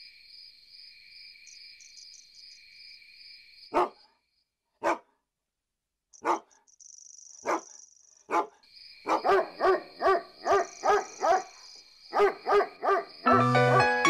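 A dog barking: single barks about a second apart, then a quicker run of barks. Insects chirp steadily in the first few seconds, and music comes in just before the end.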